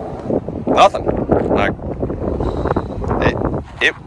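A man's voice in short fragments over steady wind rumbling on the microphone.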